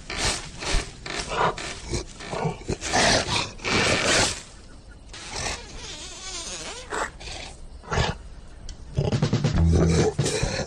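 Cartoon lion roaring in a series of loud bursts over the first four seconds or so, then quieter growls and sound effects; low steady music notes come in near the end.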